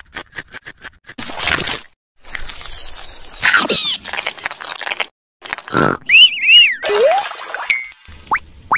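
Edited-in stop-motion cartoon sound effects. A quick run of about eight clicks opens, then scraping and crunching noise, and near the end two loud arching squeaky chirps followed by a short rising whistle-like tone.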